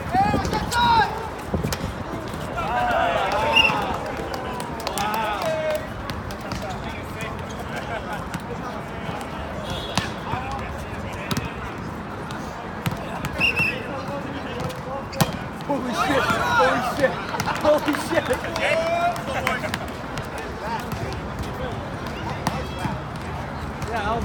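Volleyball being played on an outdoor asphalt court: occasional sharp thuds of the ball being hit and bouncing, with players and onlookers calling out in two stretches of shouting.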